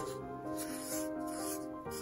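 Soft background music of sustained chords that change to a new chord near the end. Faintly under it, a brush scraping as it stirs metallic pigment powder into liquid in a small plastic cup.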